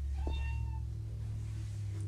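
A domestic cat gives one short meow, about half a second long, a quarter second in, held at a steady pitch.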